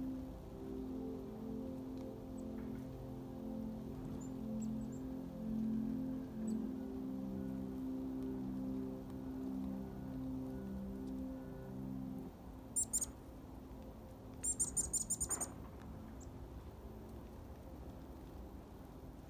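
Soft ambient music with slow sustained chords fades out about two-thirds of the way through, leaving the high, short calls of black-capped chickadees: a brief burst of chirps, then a quick run of a dozen or so notes lasting about a second.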